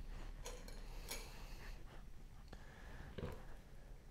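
Faint handling sounds of raw chicken pieces being threaded onto a bamboo skewer on a plastic cutting board: a handful of soft clicks and rustles spread through.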